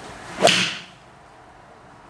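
Mizuno JPX 800 iron striking a golf ball off a hitting mat: one sharp crack about half a second in, dying away quickly.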